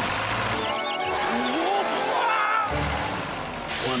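A cartoon farm tractor running with a steady low rumble while its muck spreader sprays muck with a constant hiss. A short gliding musical phrase plays over it in the middle.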